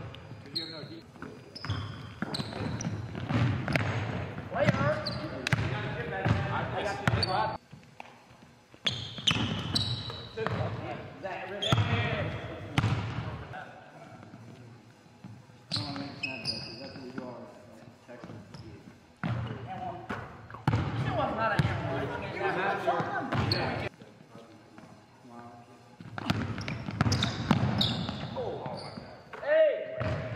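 Basketballs bouncing on a hardwood gym floor, many sharp knocks at an uneven pace, with short high sneaker squeaks and indistinct voices ringing in the large gym.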